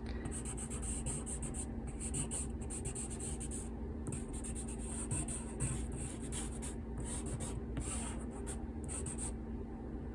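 Graphite pencil scratching across drawing paper in a run of quick, repeated sketching strokes with brief pauses between them.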